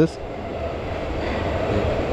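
Munich U-Bahn train approaching the station, its rumble growing steadily louder.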